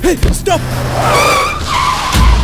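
Car tyres screeching under sudden hard braking: a loud, wavering high squeal lasting almost a second, starting about a second in, after a brief voice-like cry at the start.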